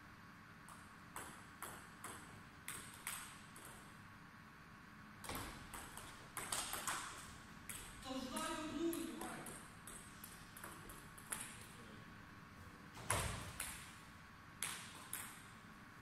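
Table tennis ball clicks: a few spaced clicks, then a quick run of bounces off table and bats during a rally, followed by scattered clicks of the ball. A short shout comes about eight seconds in, and a heavier knock about thirteen seconds in.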